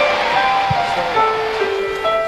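Audience cheering dies away as a live band's keyboard intro begins, held notes sliding into place and then settling into steady chords.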